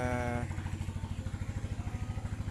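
A small engine idling steadily close by, its low running sound pulsing fast and evenly.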